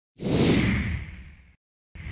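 A whoosh sound effect for an animated logo intro: one sweep of rushing noise with a low rumble beneath it, falling in pitch and fading out over about a second and a half. A second whoosh starts just at the end.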